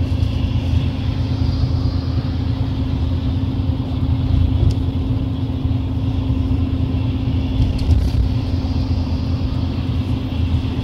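Steady engine and road rumble heard from inside a moving road vehicle, with a constant low hum and no pauses.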